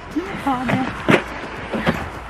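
Short wordless vocal sounds from a person, with two sharp knocks, about a second in and again near the end.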